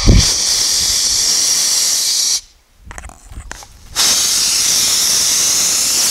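Boiler blowdown valve open on a 1911 Stanley Steamer, steam and water hissing out in a steady jet to flush sediment and mud from the boiler. The hiss stops about two and a half seconds in and starts again about a second and a half later.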